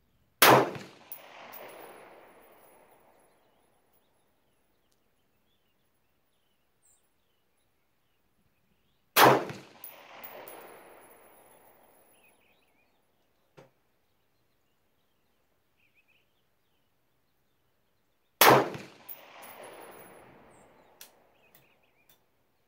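Three single shots from an AR-style rifle, about nine seconds apart, each followed by an echo that dies away over about three seconds.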